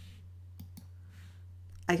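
Two computer mouse clicks in quick succession, about two-thirds of a second in, over a steady low electrical hum.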